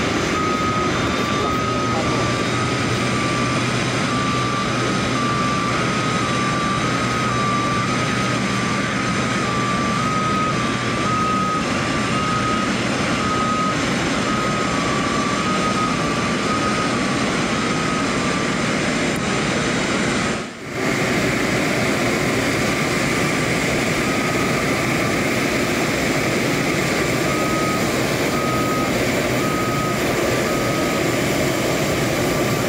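Steady jet turbine roar from an Airbus A380 during pushback, with a two-tone warning beeper alternating high and low over it. The sound drops out for an instant about two-thirds of the way through, then carries on.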